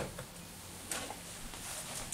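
Two metal screw-in shotgun choke tubes being set down upright on cardboard: a sharp tap at the very start and a softer one about a second in, with faint handling rustle between.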